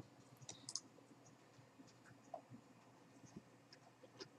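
Near silence: room tone with a few faint, short clicks of a computer mouse.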